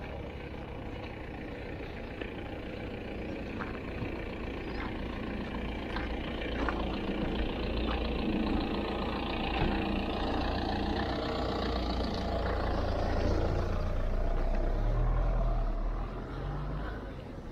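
A car engine running at low speed as the car rolls slowly closer, the rumble growing louder until it passes close by near the end.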